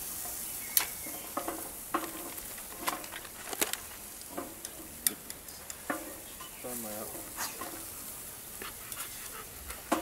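Meat sizzling on a barbecue grill grate, with metal tongs clicking sharply against the grate and foil tray many times as the pieces are turned.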